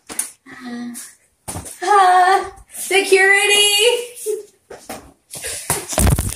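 A woman's loud, high-pitched vocalising with no clear words, in two long stretches starting about two and three seconds in, after a few short knocks near the start.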